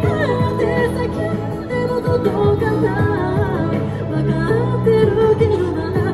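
A singer singing a pop song live into a handheld microphone, amplified over a backing track of steady chords and bass.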